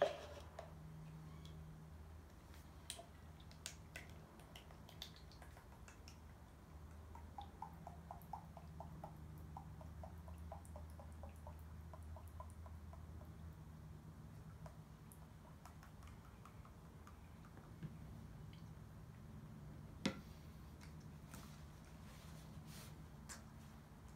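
Engine oil glugging out of a bottle into a plastic measuring jug, a quick run of gurgles lasting several seconds, over a faint low hum. Scattered small handling clicks, with one sharper click near the end.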